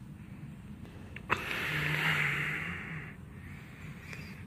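Handling noise from the filming phone being moved: a sharp click a little over a second in, then about a second and a half of rushing, rubbing noise on the microphone.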